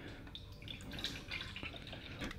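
Coconut milk drink poured from a carton into an empty plastic blender cup, faint.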